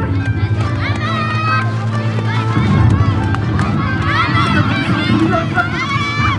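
Loud yosakoi dance music played over a sound system, with voices shouting over it.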